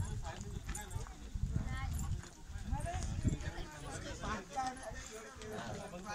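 Several people talking as they walk, over a low rumble, heaviest in the first half.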